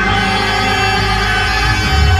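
Live gospel worship music: the accompaniment holds a steady chord over a strong bass, between sung lines.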